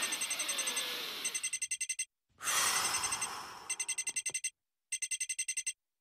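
An incoming call ringing as a rapid electronic trill, in five short rings with brief gaps between them. A hissing swell of noise rises under the first and third rings.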